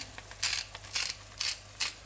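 Hand-twisted salt grinder crunching salt crystals in short repeated bursts, about three a second.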